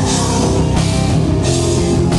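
Live hard rock band playing loud: distorted electric guitars over a drum kit, with cymbals crashing in steady pulses.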